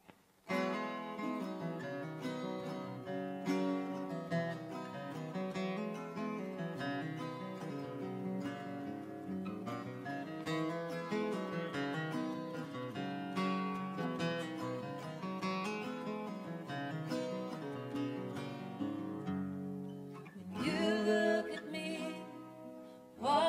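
Acoustic guitar playing a song intro, starting about half a second in, with a singing voice coming in near the end.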